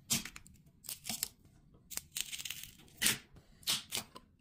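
Packing tape being peeled and ripped off a taped-together mould around a cast resin block, in a string of short tearing bursts. The loudest come about three seconds in and again shortly before the end.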